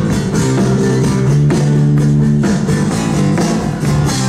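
Live rock band playing an unplugged set: strummed guitars and bass over a drum beat in a passage without singing, heard loudly from within the audience.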